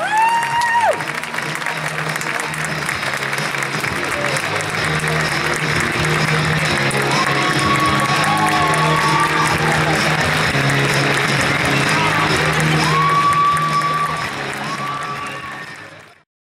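A choir's held final chord cuts off about a second in, and an audience applauds and cheers, with a few high whoops. The applause fades out near the end.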